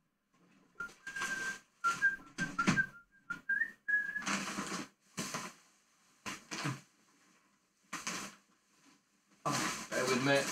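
A man whistling a few short wavering notes while rummaging through boxes and packaging, over bursts of rustling and knocking. The whistling stops about four seconds in, and the rummaging carries on.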